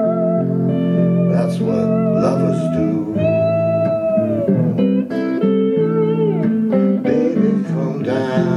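Two electric guitars playing an instrumental break: a lead line of held notes with vibrato and bends over strummed chords from the second guitar.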